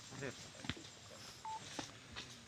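Two sharp knocks about a second apart, with a short single electronic beep between them.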